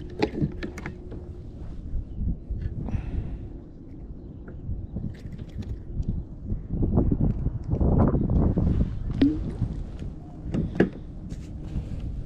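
Wind noise on the microphone with scattered light clicks and knocks as a small fish is unhooked with pliers in a plastic kayak; the rumble swells louder for a couple of seconds past the middle.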